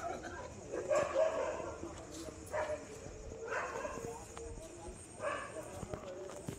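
A dog barking in a handful of short barks, spaced a second or more apart, over faint background voices.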